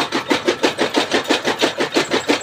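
Electric-motor-driven chaff cutter chopping green fodder fed in by hand, its belt-driven flywheel blades cutting in a fast, even rhythm of about six chops a second.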